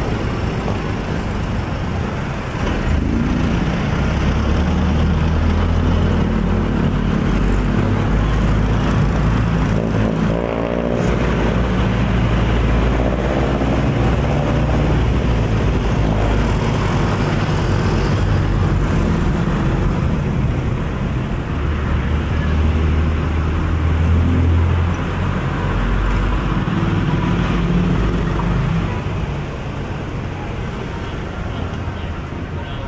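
Busy city street traffic heard from close among the vehicles: the engines of jeepneys, motorcycles and cars running steadily alongside. About ten seconds in, one engine rises in pitch as it speeds up.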